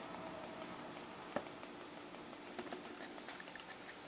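Quiet bench room tone with a faint steady electrical hum, broken by one sharp click about a second and a half in and a few softer ticks.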